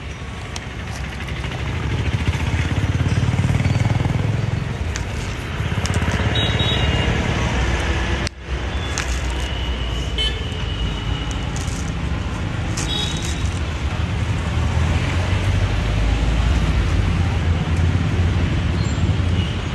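Passing road traffic, engines rumbling and swelling as vehicles go by, with short horn toots about six and thirteen seconds in.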